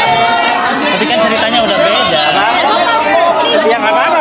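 Overlapping chatter of several voices talking at once, with no single clear speaker.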